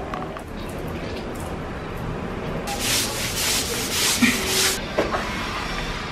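Broom scrubbing a tile floor: a quick run of about eight hissing strokes, about four a second, over a couple of seconds in the middle.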